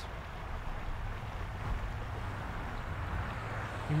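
Steady low rumble of outdoor city background noise: distant traffic heard across an open park, with no distinct events.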